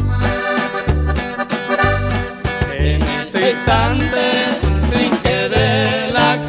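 Norteño corrido instrumental break: an accordion plays a melodic run with wavering ornaments over a bass that changes notes on the beat, with strummed accompaniment and no singing.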